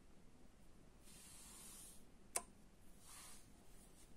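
Near silence: two faint soft swishes of sewing thread being drawn taut through the fingers, and one small click a little past two seconds in.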